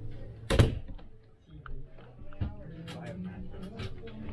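A wooden cabin door knocks hard once about half a second in, followed by a few lighter clicks and taps, over a low steady hum and faint background voices.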